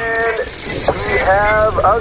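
Rows of toppling dominoes clattering continuously in a rapid ratchet-like rattle, with voices calling out over it.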